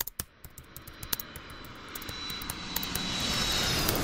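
Jet airliner noise heard from inside the cabin, fading in and growing steadily louder over a few seconds. A string of sharp clicks comes in the first second or so.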